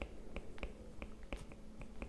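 Faint, irregular ticks of a stylus pen tapping and sliding on a tablet screen while handwriting, about four or five a second.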